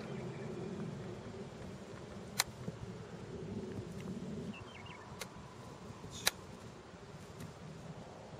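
Two sharp clicks about four seconds apart, a wedge striking golf balls on chip shots, with a fainter click between them, over a steady low background hum.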